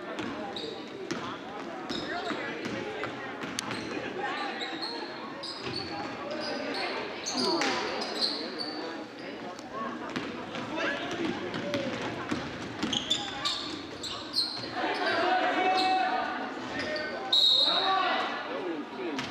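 A basketball dribbled on a hardwood gym floor, with sneakers squeaking and players and spectators talking and calling out, all echoing in the gym. Near the end a referee's whistle blows sharply, stopping play.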